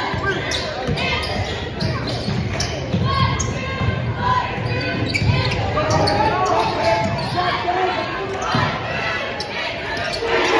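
A basketball being dribbled and bounced on a hardwood gym floor, a string of sharp thuds about one to two a second, echoing in a large hall. Spectators' voices talk underneath.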